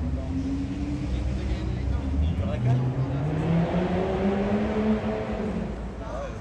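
A car engine running with a low rumble, then rising steadily in pitch for about three seconds as it speeds up, and easing off just before the end.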